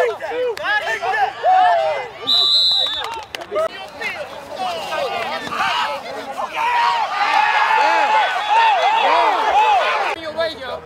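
Many voices of players and sideline onlookers shouting and cheering over each other during and after a football play, with a short high whistle blast a little over two seconds in. The shouting swells near the end.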